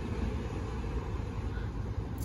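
Steady low outdoor rumble with no distinct event, the kind of background noise that wind on the microphone and distant traffic make.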